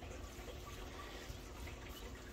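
Faint room tone: a low, steady hum and hiss with no distinct event.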